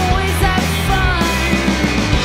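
Surf-pop band playing live: electric guitars, electric bass and a drum kit with a steady beat, and a melody line gliding up and down over the top.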